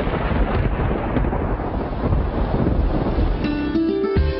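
Thunderstorm: rolling thunder rumbling over a steady hiss of rain. About three and a half seconds in, music with plucked notes comes in over it.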